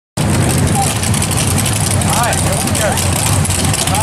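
Drag-race car engine idling loudly and steadily, a dense low rumble, with voices faintly audible over it.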